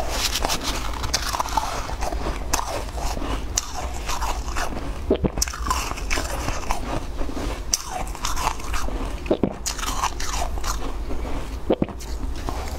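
Shaved ice being scooped with a metal spoon and bitten and chewed, with many crisp, icy crunches one after another.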